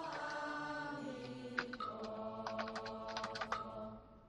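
Computer keyboard typing: a run of quick, irregular keystrokes from about a second and a half in, entering Chinese characters. Sustained chanting in the background runs underneath and stops at the end.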